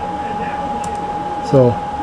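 Steady background hum with a constant mid-pitched tone, and a couple of faint clicks a little under a second in from computer keys being pressed as a dimension is entered.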